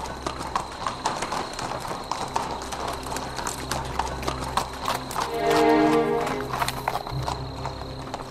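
Horses' hooves clip-clopping on stone paving as a chariot team arrives, over a low steady music drone; about five seconds in a horse whinnies for about a second.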